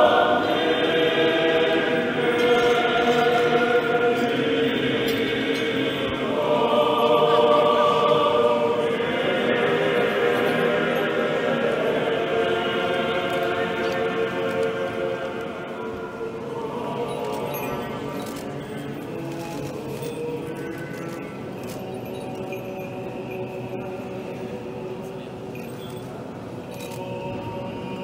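Choir singing Orthodox liturgical chant in sustained voices, louder in the first half and settling to a softer level after about halfway.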